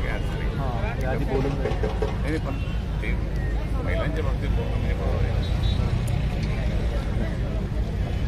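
Men talking in a crowd, voices overlapping, over a steady low rumble.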